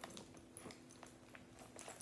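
Near silence: room tone with a few faint clicks from a faux-leather crossbody bag and its gold-tone chain being handled.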